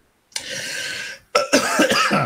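A man coughing and clearing his throat: a long rasping cough, then a harsher hacking burst near the end, from a tickle in his throat.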